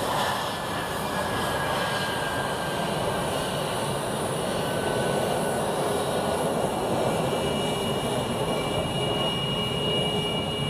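Twin Pratt & Whitney F119 turbofan engines of an F-22A Raptor at taxi power: a steady jet rush with thin high whines over it. A higher whine comes in about seven seconds in as the jet rolls past.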